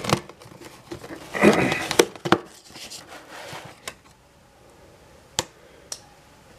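A cardboard shipping box being handled and shifted on a table: rustling with several sharp knocks and clicks, mostly in the first four seconds, then quieter with one last click near the end.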